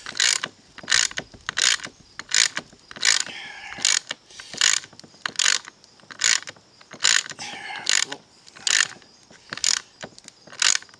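Ratchet wrench tightening a bolt, clicking in short bursts about once every 0.8 s, with a brief squeak twice, as the bolt draws a T-nut into the wood.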